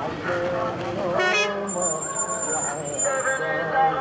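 Voices of a walking crowd talking in the street, with a short horn toot a little over a second in, followed by a thin, steady high-pitched tone lasting under two seconds.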